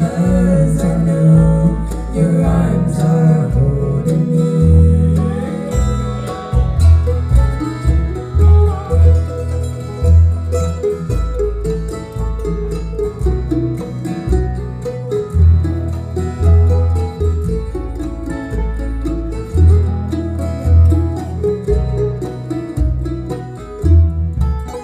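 Acoustic bluegrass band (banjo, fiddle, mandolin, dobro, guitar and upright bass) playing an instrumental break between sung verses of a gospel song, with the banjo taking the lead in the second half.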